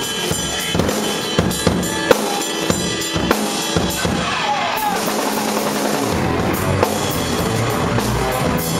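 Live rock band playing with drums and electric guitars, the drum kit prominent with a steady beat. A wavering, bending note runs through the middle, and the low end fills out near the end as the bass and full band come in harder.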